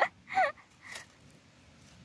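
Two or three short, high-pitched voice sounds in the first second, the second falling in pitch, followed by quiet outdoor background.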